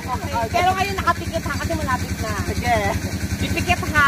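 Voices talking over the steady, evenly pulsing low hum of a small engine running.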